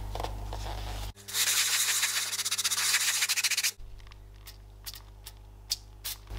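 An aerosol spray can hissing in one continuous spray of about two and a half seconds, starting about a second in and cutting off sharply. After it come a few faint clicks.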